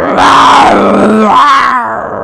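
A woman's voice imitating a bear's roar: one long, loud, rough 'grroarrr' growl that wavers up and down in pitch.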